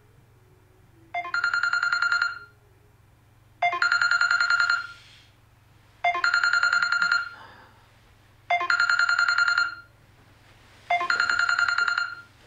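Trilling electronic ringtone in the style of an old telephone bell, ringing five times. Each ring lasts about a second, with a pause of about a second and a half between rings.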